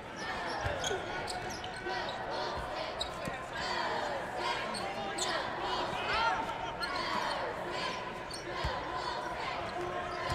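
Basketball dribbled on a hardwood court, a few dull bounces through the steady murmur of an arena crowd, with short high sneaker squeaks.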